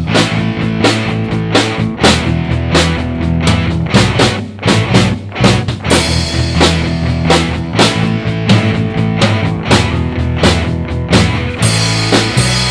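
Acoustic drum kit played in a steady rock groove, with regular snare, bass drum and cymbal hits, over a rock backing track with a held bass line and electric guitar.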